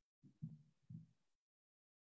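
Two soft, low thumps about half a second apart, then the sound cuts out to dead silence.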